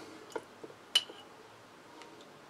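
Metal spoon scooping capers out of a glass jar into a plastic food processor bowl: a few light taps and one sharper clink about a second in.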